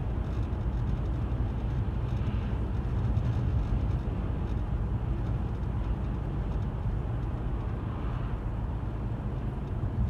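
Steady low rumble of a car driving along, mostly tyre and road noise heard from inside the cabin.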